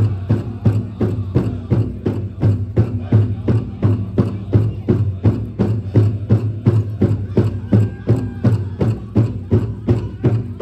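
Powwow drum group: a big drum struck in a steady, even beat of about three strokes a second, with the singers' voices over it.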